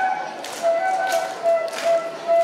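Bamboo bansuri flute playing a melody of held notes, which thin out at the start and resume about half a second in. Three sharp taps fall at even spacing about two-thirds of a second apart as it plays.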